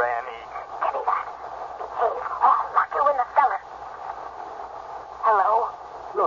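Speech only: a voice talking in several short, indistinct bursts of radio-drama dialogue.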